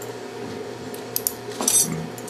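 Steel surgical instruments clicking against each other while hemostat forceps are handled: two light metallic clicks a little past a second in, then a quick cluster of clicks near the end, over a low steady hum.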